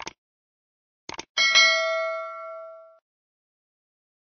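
Sound-effect clicks: one at the start and a quick cluster about a second in. Then a bright bell ding, struck twice in quick succession, rings out and fades over about a second and a half: a subscribe notification-bell effect.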